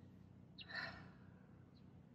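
A woman's single soft breath out, a sigh lasting about half a second a little under a second in, against near-silent room tone with a faint steady low hum.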